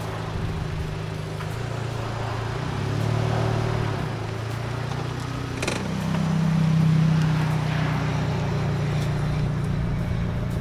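Mitsubishi Lancer GT's four-cylinder engine running steadily at low revs. A short click comes about five and a half seconds in, then the engine note rises in pitch and level as the car pulls away.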